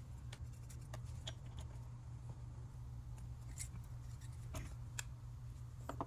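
Faint, scattered light clicks and ticks of a screwdriver and small metal screws being handled as an old ignition coil is unscrewed and lifted out, over a low steady hum.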